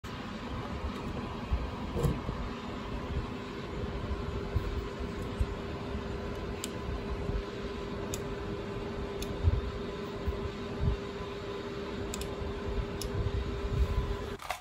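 Steady low background hum with a constant tone, like a fan or appliance running, and a few light clicks scattered through it.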